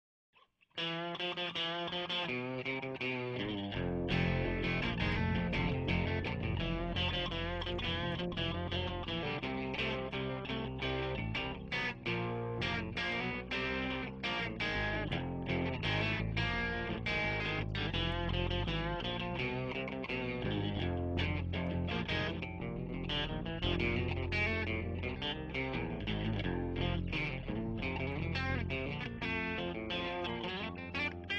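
Instrumental background music led by guitar, starting just under a second in and filling out with a heavier low end about four seconds in.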